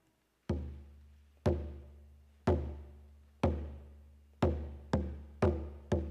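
Single-headed frame hand drum struck in a slow, steady beat: deep booms about one a second, each ringing out before the next. A little past the middle the beat quickens to about two a second, as the lead-in before the song's singing begins.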